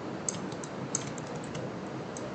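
Computer mouse and keyboard clicks as the user drives the 3D modelling software: a few short sharp clicks, two of them louder, over a steady background hiss.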